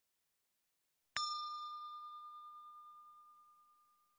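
A single bell-like ding chime from a subscribe-button animation's notification bell, struck about a second in and ringing away smoothly over two to three seconds.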